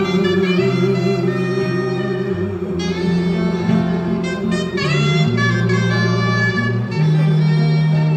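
Instrumental break in a slow ballad: a soprano saxophone plays the melody in held notes over strummed acoustic guitar and sustained low bass notes.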